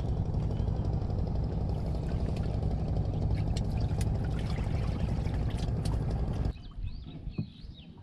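A steady low rumble with a few light clicks over it, which cuts off abruptly about six and a half seconds in, leaving much quieter faint sounds.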